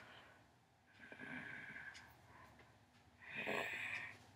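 A person making two short, noisy breathy sounds, like snorts or laughs breathed out through the nose: one about a second in and a louder one near the end.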